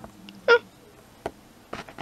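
A short, high, cat-like mew about half a second in, the cry given to the toy dragon as the snowman figure is pushed into its basket. A few light clicks of the plastic toy figures follow.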